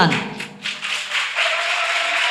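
Audience clapping, starting about half a second in and running on steadily, as the speaker's voice dies away in the hall's echo.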